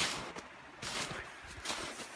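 Footsteps in deep snow: about three steps, each a soft scrunch.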